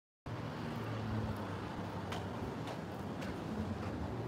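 Steady outdoor urban background noise with a low hum, like distant traffic. Faint footsteps come about twice a second in the second half as the camera carrier walks in.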